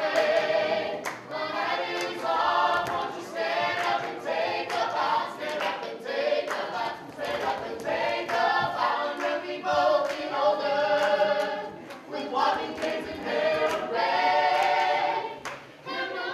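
A group of voices singing a cappella, choir-like, with a male lead on a microphone and frequent hand claps.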